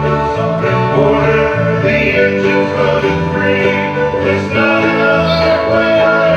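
A live folk band playing a Newfoundland sea song, with a mandolin strummed among the instruments.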